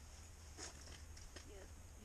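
Near silence over a low steady rumble, with a few faint clicks and rustles through the middle as hemostat forceps are worked to free a hook from a small fish's mouth.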